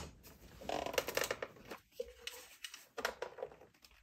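Plastic parts of a Riccar 8900 upright vacuum being handled and pressed into place on its underside: scattered clicks and short scrapes as a part is fitted over its grooves and lined up for the screws.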